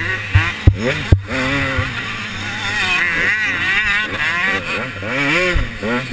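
KTM 125 two-stroke motocross bike engine revving up and down with the throttle through ruts and corners, close to the microphone. Several sharp knocks in the first second and a half.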